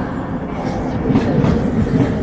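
NS Sprinter electric commuter train rolling past close by along a station platform: a steady rumble with a few wheel clacks over rail joints.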